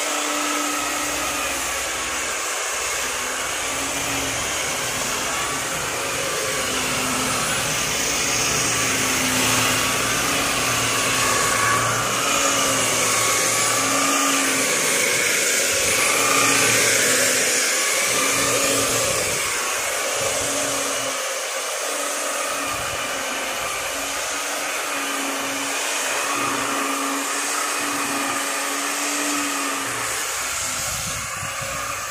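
Handheld electric belt sander running steadily as it sands a kamper-wood door panel, its motor whine wavering slightly in pitch as the strokes and pressure change.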